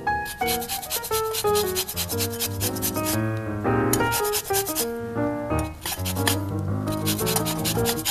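Orange peel rubbed on a fine rasp grater: runs of quick, even scraping strokes, pausing about three seconds in and again around six seconds, over background guitar music.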